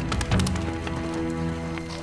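A horse galloping, its hoofbeats striking repeatedly over background music with held notes.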